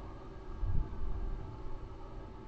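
Low, muffled bumps and rumble of a phone or laptop microphone being handled as the device is moved about, over faint steady hiss.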